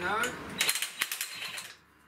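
Cordless drill running in a few short bursts with rapid clicking and rattling, stopping shortly before the end.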